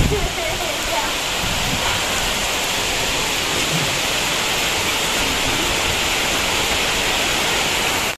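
Heavy rain falling steadily, a dense, even hiss.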